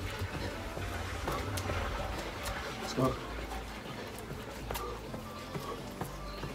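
A man breathing hard during fast mountain climbers, with a short voiced grunt about three seconds in and a few faint taps, over a steady low rumble.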